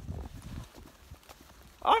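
Low rumble of wind on the microphone that fades out about half a second in, then a few faint footfalls on wet woodland ground. A man's voice starts just before the end.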